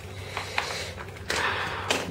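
Xiaomi Mi 2S's plastic back cover being pried off the phone: a few light clicks as its clips give, then a short scraping stretch that ends in a sharp snap near the end as the cover comes free.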